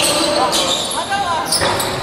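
Basketball game on a hardwood gym court: a ball bouncing and players' footwork, heard as several short sharp knocks and a few brief high glides, over voices in a reverberant hall.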